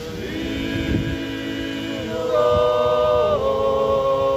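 Small male a cappella ensemble singing Georgian polyphony, several voices holding long chords in close harmony. A new chord sets in at the start, and the harmony shifts about two seconds in and again past three seconds.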